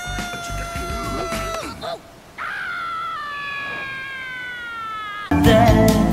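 A voice holds two long notes, each sinking slightly in pitch, the second starting with an upward swoop. About five seconds in, loud band music comes in suddenly.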